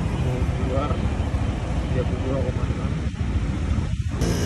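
Steady low rumble of motor-vehicle traffic passing on a busy road.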